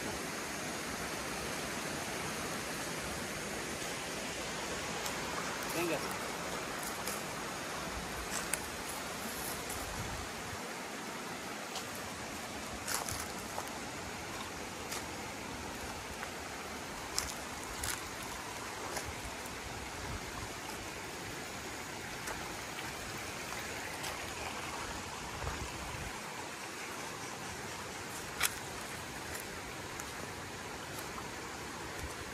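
Steady rush of flowing river water, with scattered crackles and snaps of footsteps on dry leaves and twigs.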